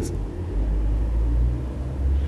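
A low rumble that swells about half a second in and eases off near the end.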